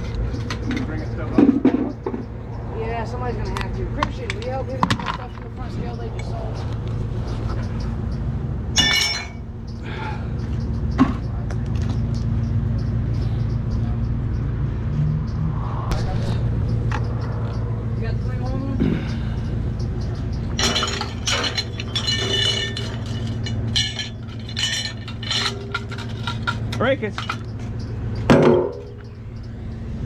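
Small metal scrap being handled by hand: scattered clinks and knocks of metal parts, with a few sharper clanks, over a steady low mechanical hum.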